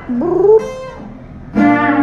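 A woman singing to her own acoustic guitar: her voice slides upward near the start, the sound drops for a moment, then a loud held sung note comes in over the guitar about three quarters of a second before the end.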